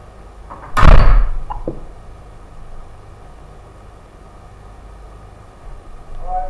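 A single loud thump just under a second in, dying away over about half a second, followed by two small knocks, over a low steady room hum.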